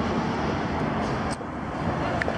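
Steady city street traffic noise from passing cars, dipping briefly about a second and a half in.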